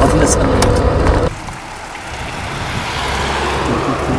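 Background noise of a covert surveillance recording: loud and muffled at first, then about a second in it cuts to a quieter steady hiss with a low hum that slowly grows louder.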